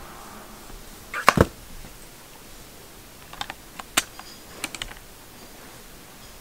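Sharp plastic clicks and knocks as a screen protector's plastic alignment frame is handled and set over a phone in its box. A loud double knock comes about a second in, then a scatter of lighter clicks around the fourth and fifth seconds.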